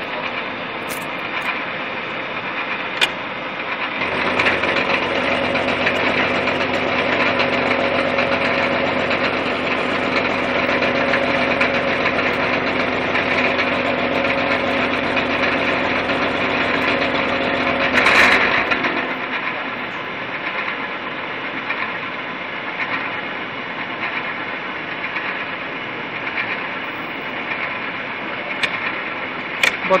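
Milling machine face-milling a drawn steel bar with a carbide-insert face mill, running steadily. It grows louder, with a steady low hum, from about four seconds in, then drops back after a brief loud burst about eighteen seconds in.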